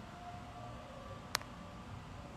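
Quiet room tone with a faint low hum, a brief faint tone under half a second in, and one sharp click about one and a half seconds in.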